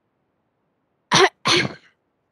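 A person coughing twice in quick succession, starting about a second in.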